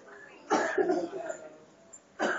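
A person coughing: one loud burst about half a second in.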